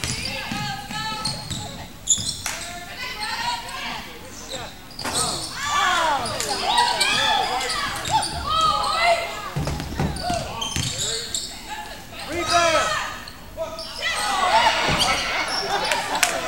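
A basketball dribbled on a hardwood gym court amid the squeaks of sneakers and players' voices, echoing in the hall.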